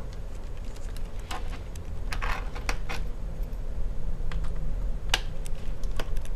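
Scattered light clicks and small metallic taps of a screwdriver and screws against a MacBook Pro's aluminium bottom case as the back-panel screws are removed; the sharpest click comes near the end.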